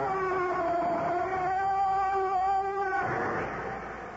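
Sound effect of a creaking door slowly swinging shut, the radio show's signature sign-off: one long drawn-out creak whose pitch sinks and wavers, ending about three seconds in with a short noisy rush as the door closes.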